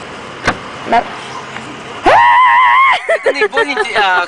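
Strange vocal sounds from a person in a car trunk: about halfway through, a loud, high-pitched squeal is held for about a second with a slight wobble, then quick babbling follows, over the steady noise of the moving car. Two short knocks come in the first second.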